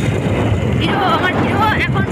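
Wind rumbling steadily on the microphone on a moving motorbike. A voice comes in about halfway through.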